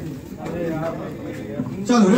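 Indistinct voices of several people talking in the background, with no clear words.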